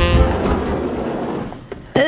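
Jazz saxophone background music ends about half a second in, giving way to a noisy rush that fades out over about a second. A sharp click comes near the end.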